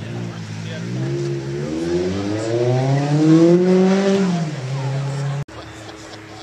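Sports car engine running at idle, then revving up with a steadily rising pitch over about three seconds as it pulls away. It drops quickly back to a low steady note, and the sound cuts off suddenly near the end.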